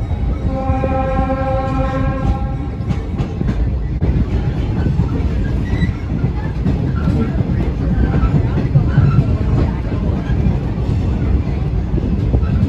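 Rumble and clatter of a train's wheels on the track, heard from aboard the moving car. In the first three seconds the locomotive sounds one long, steady, pitched horn blast.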